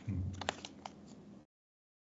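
A few sharp clicks of computer keys, about four in the first second, over faint room noise. The sound cuts off abruptly about a second and a half in.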